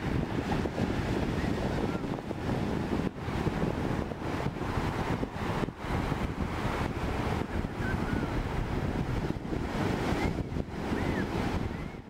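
Ocean surf breaking and washing up the beach in a steady rush, with wind buffeting the microphone.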